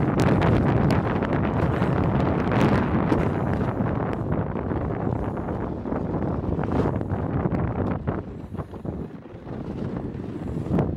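A toboggan running fast down an icy chute, with wind rushing over the microphone and scattered knocks and rattles from the sled on the track. It gets somewhat quieter near the end.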